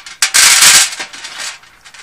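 Handful of hard-shelled jelly beans clattering together in cupped hands close to the microphone, one loud burst about half a second long, followed by softer rustling as they are picked over.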